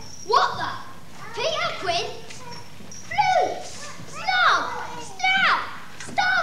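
A child's voice giving a string of short, high cries, each sliding steeply down in pitch, about six of them roughly a second apart.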